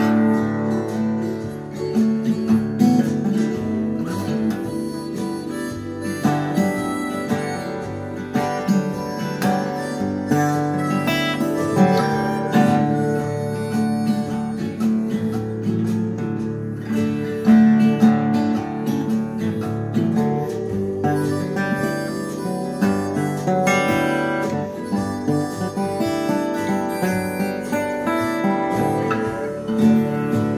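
Acoustic guitar strummed continuously, playing ringing chords in a steady instrumental passage with no singing.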